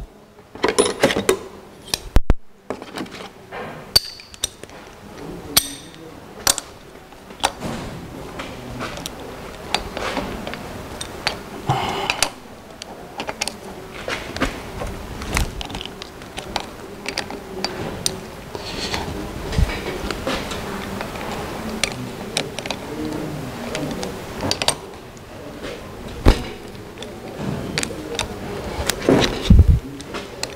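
Irregular metallic clinks and knocks of steel sockets and a wrench from a socket set being handled and fitted, to undo an engine's flywheel bolts.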